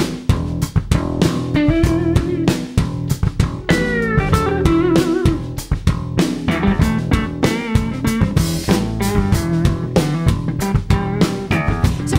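Live blues band playing a song's intro: electric guitar leads with bent, gliding notes over bass guitar and a steady drum-kit beat.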